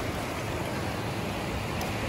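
Steady, even wash of surf at the water's edge.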